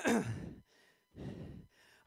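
A man's loud voiced sigh, falling in pitch, followed about a second later by a heavy breath.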